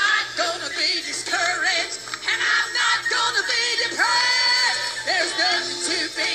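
Church choir singing a Pentecostal gospel song, many voices with wavering vibrato, over a faint steady low beat.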